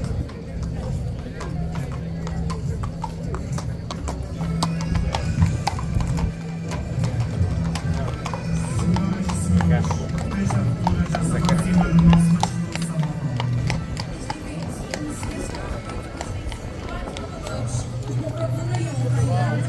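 A horse's hooves clip-clopping on the paved street as it is led past, over music with a steady low bass and the voices of a crowd.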